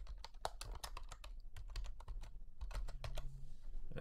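Typing on a computer keyboard: a quick, irregular run of keystrokes as a couple of words are typed.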